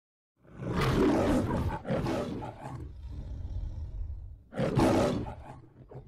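The MGM studio logo's lion roaring: a long roar starting about half a second in, a shorter second roar, a lower growl, then a third roar near the end that trails off.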